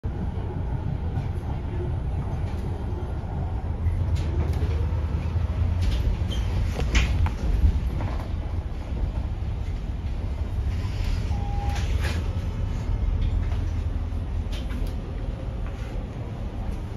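Inside a city bus: a steady low rumble from the bus's engine and running gear, with scattered rattles and clicks from the interior fittings. One short beep sounds past the middle.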